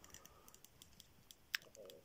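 Faint scattered clicks and light rustling from handling a retractable tape measure as it is laid out along the plush's fabric ribbons, with one sharper click about one and a half seconds in.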